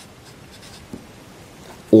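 An Edding 9 felt-tip marker writing a word on paper: faint scratching and squeaking strokes of the tip across the sheet.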